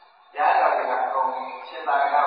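A man speaking in Burmese: a monk delivering a sermon, with a brief pause near the start.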